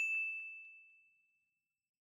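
Notification-bell ding sound effect of a subscribe-button animation: a single high, clear chime that rings and fades away over about a second and a half.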